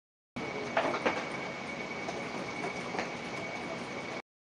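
Steady background hiss with a constant thin high whine, broken by a few sharp knocks about a second in and another near the end. The sound cuts out completely for a moment at the very start.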